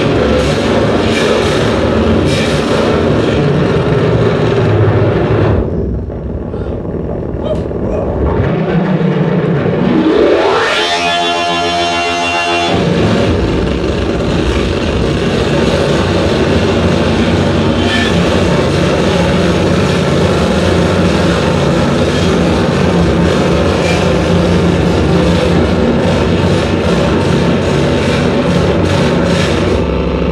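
Live harsh noise from hand-played electronic noise boxes: a loud, dense wall of distorted noise. About six seconds in it thins to a low rumble, then a rising sweep climbs to a high pitch and breaks into a stuttering pulsed tone for a couple of seconds before the full noise wall comes back.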